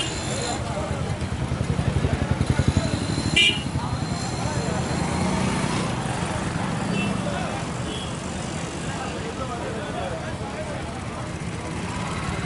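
Street procession noise: a crowd of voices mixed with motorcycle and bus engines running close by. The engine throb swells between about one and a half and three seconds in, and a short, sharp, high sound cuts through about three and a half seconds in.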